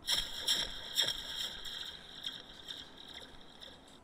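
Opening of a music video playing back: a hissing, noise-like sound effect comes in suddenly with a few soft clicks and fades away over a few seconds, before the song begins.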